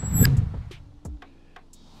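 An edited-in transition sound effect: a low swell at the start that fades away over about a second, with a few light clicks and a short falling tone.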